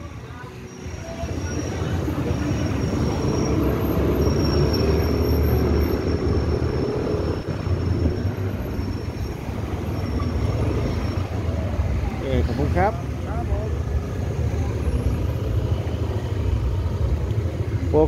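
Motorcycle ride heard from the pillion seat: a steady low engine and wind rumble that swells about a second in and holds, with a brief voice about two-thirds of the way through.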